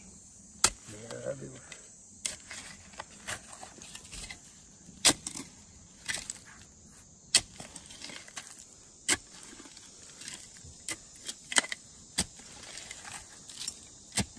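A short-handled hand pick chopping into dump soil full of rubble: roughly a dozen sharp strikes at irregular intervals, one to two seconds apart. Cicadas buzz steadily behind.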